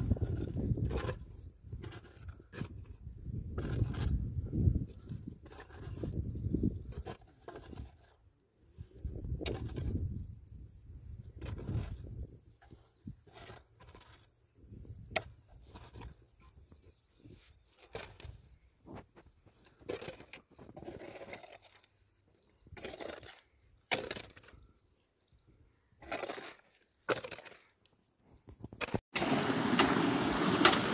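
Hand hoes chopping into and scraping soil in irregular strokes as a furrow is dug, with a low rumble under the strokes for the first twelve seconds.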